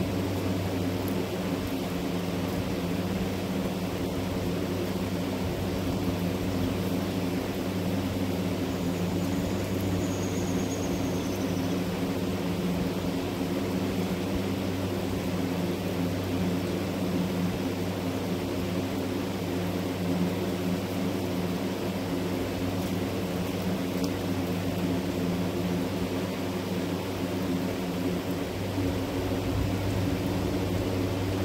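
A steady mechanical hum: several low steady tones over an even hiss, unchanging throughout, like a motor-driven machine running.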